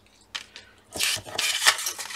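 Pieces of card and paper being handled and slid on a cutting mat: a light tap, then about a second of rustling and scraping with a sharp click near the end.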